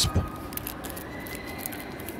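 Faint, soft crinkling and ticking of a foil trading-card pack (Panini Contenders Draft Picks) being handled, over a faint steady background hum.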